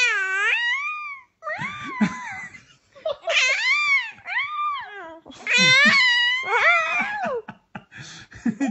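A baby girl squealing and cooing happily in about four long, high-pitched calls. Each call rises and falls in pitch, with short gaps between them.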